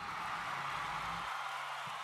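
Steady hiss of background noise, with a faint low hum that cuts out a little past halfway.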